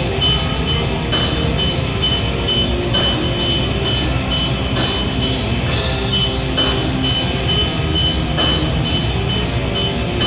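Hard rock band playing live: electric guitar over a drum kit keeping a steady, driving beat with regular cymbal hits.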